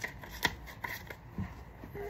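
Paper Monopoly bills being handled and rustled, with a few soft taps.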